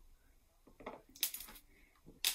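A single sharp clink of a small hard object knocking against a table about a second in, amid faint handling of makeup tools.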